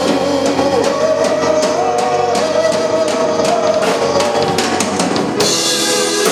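Live rock band playing, the drum kit to the fore with bass drum and snare hits under electric guitars, and a held melody line that bends in pitch.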